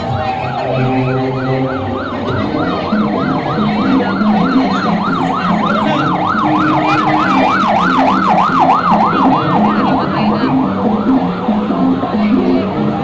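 An electronic siren yelping, its pitch sweeping up and down about four times a second, growing louder through the middle and fading near the end, over parade music.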